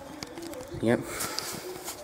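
Rustling and scraping of a handheld camera being moved and handled, loudest in the second half, after a short spoken "yep".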